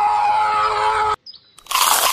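A steady, high held tone that cuts off about a second in, then, near the end, a short loud crunch as teeth bite into a chili-topped hammer head.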